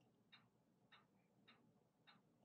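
Near silence, with faint ticks at an even pace, a little more than half a second apart.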